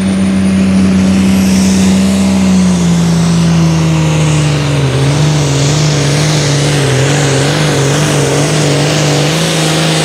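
Turbocharged diesel engine of a Super Farm pulling tractor running hard under the load of a pulling sled. Its pitch steps down a little about three seconds in and then wavers, over a steady hiss.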